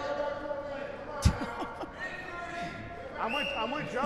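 Indistinct voices of players calling out in a large echoing hall, with one sharp smack of the game ball about a second in.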